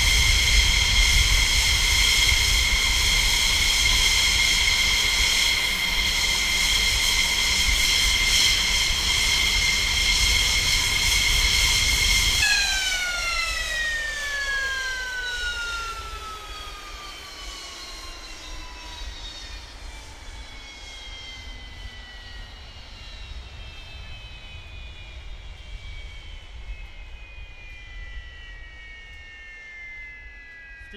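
F-16 jet engine idling with a steady high whine over a rumble, then shut down about twelve seconds in: the whine winds steadily down in pitch and fades as the turbine spools down.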